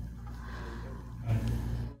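A woman's short in-breath near the end of a pause in speech, over a steady low hum.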